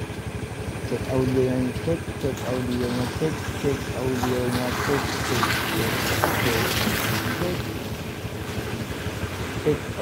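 Motorcycle engine idling with a steady low pulse. Around the middle, a hiss swells and fades as a vehicle passes on the wet road.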